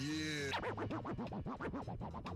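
DJ turntable scratching over a dance-music mix: a record is pushed back and forth in quick strokes, each a short rising-and-falling pitch sweep, starting about half a second in. Before that, a pitched sound slides downward.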